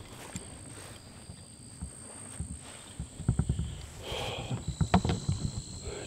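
Rustling, soft scuffs and knocks of someone moving through tall grass and weeds, busiest in the second half. Insects keep up a steady high-pitched drone underneath.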